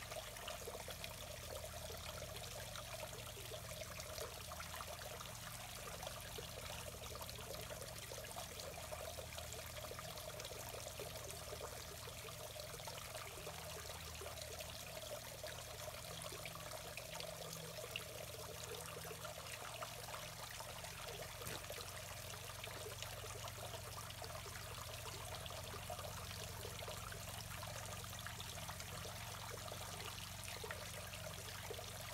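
Creek water trickling steadily over a stone ledge into a shallow pool, a faint continuous running-water sound.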